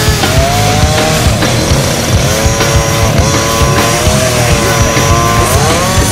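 Radio-controlled model car's engine revving up and down several times, over rock music with a steady beat.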